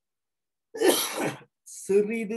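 A person clears their throat once, a short harsh burst about a second in, and then starts speaking just before the end.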